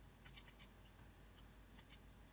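Faint computer mouse clicks over near silence: a quick group of about four shortly after the start, and two more near the end.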